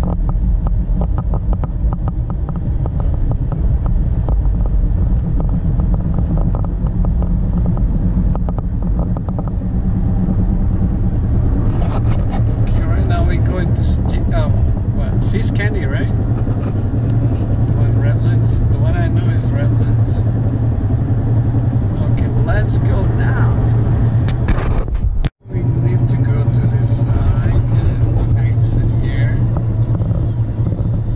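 Steady low road and engine rumble inside a car cruising on a freeway, with people talking over it from about halfway through. The sound drops out for an instant near the end.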